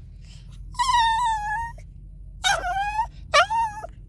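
Small Chihuahua-type dog whining to beg for food: one long high whine about a second long, then two short whines that rise and fall.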